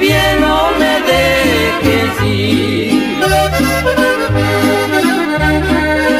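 Norteño music, instrumental break: an accordion plays the melody over an alternating bass line.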